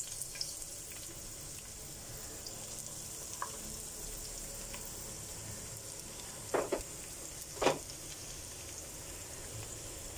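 Sliced onions frying in hot oil and ghee in a nonstick pan, a steady sizzling hiss as they are stirred. Two short, louder sounds break in about seven seconds in.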